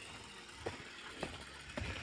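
Faint footsteps on a stone-slab path: three soft steps a little over half a second apart, over a quiet outdoor background.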